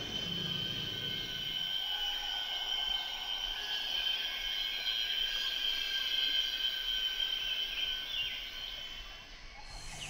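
Rainforest insect chorus: a steady high-pitched drone of several insects holding fixed pitches, easing off near the end.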